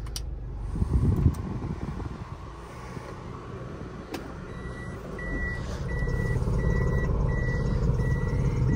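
A Toyota car's reverse-gear warning beeping inside the cabin: about six evenly spaced high beeps, starting about four and a half seconds in, just after a click of the automatic gear selector being moved. The car's engine runs underneath.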